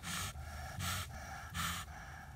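A broody Buff duck sitting on her nest hisses three times, short breathy hisses about a second apart. This is the defensive warning of a broody hen guarding her eggs from a close approach.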